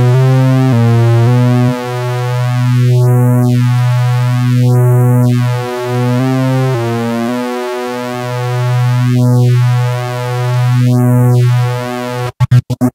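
Roland SP-606 sampler's oscillator pad playing a sustained buzzy synth tone that steps to a new pitch a few times. A flange sweep makes it whoosh up and down several times.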